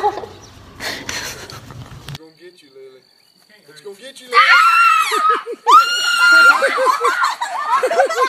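A girl screaming in high-pitched shrieks as a chicken chases her, starting about halfway through, with one long held scream. A short quiet stretch comes before it.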